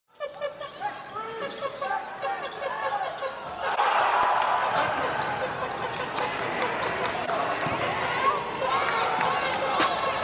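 Basketball game sound in a gym: a ball bouncing on the hardwood court and sneakers squeaking, over the voices of a crowd in the stands. The crowd noise gets louder about four seconds in.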